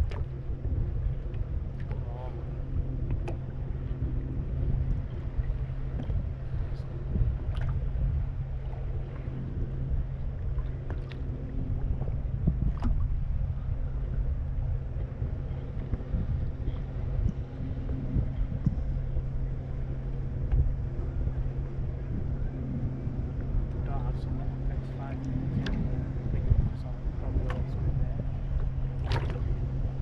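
Small boat drifting on choppy water: a steady low rumble and hum with scattered light knocks and slaps of water against the hull.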